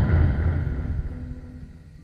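A low cinematic boom used as a transition sound effect. It is loudest at first and fades away as a deep rumble over about two seconds.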